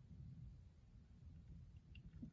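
Near silence: faint low room tone.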